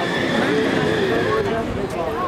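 A person's voice, drawn out and wavering in pitch, with no clear words.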